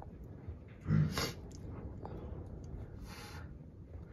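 A short, close-up grunt or huff about a second in, and a brief breathy hiss a little after three seconds.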